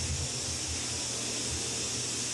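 Energized Tesla coil apparatus giving off a steady high-pitched hiss, with a low, uneven hum beneath it.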